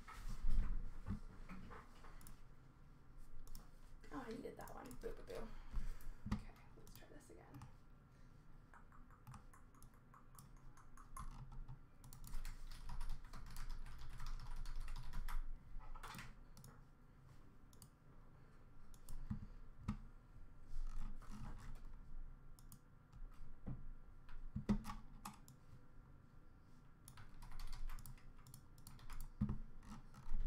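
Computer keyboard being typed on in irregular bursts of clicks, with pauses between.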